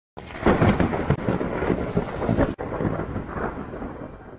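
Thunder rumbling over rain, with a brief break about two and a half seconds in, fading out near the end.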